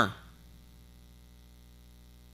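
Faint, steady electrical mains hum: a low buzz with a stack of evenly spaced overtones. A man's voice trails off at the very start.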